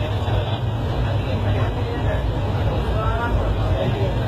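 Steady low rumble of a moving passenger train heard from inside the coach, as another train passes close alongside, with passengers talking over it.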